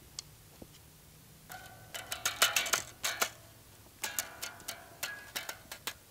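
Irregular run of sharp clicks and taps with short ringing tones, in two clusters starting about one and a half seconds and four seconds in.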